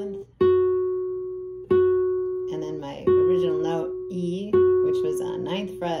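Guitar playing one single note, F sharp, four times about a second and a half apart, each picked sharply and left to ring and fade.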